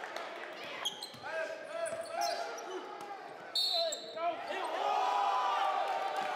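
Basketball dribbled on a hardwood gym floor, with crowd voices carrying through the hall. About three and a half seconds in, a short, sharp referee's whistle blast stops play.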